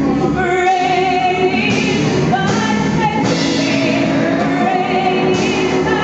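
A woman singing a gospel solo through a microphone, holding long notes with vibrato over a steady sustained accompaniment.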